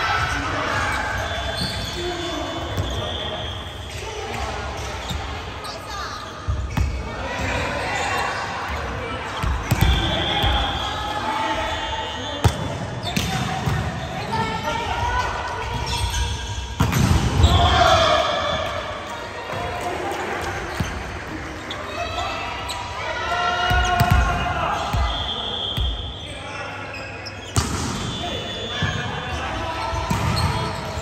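Volleyball rally in a gymnasium: repeated sharp smacks of hands and arms hitting the ball, with players calling out between hits, echoing in the large hall.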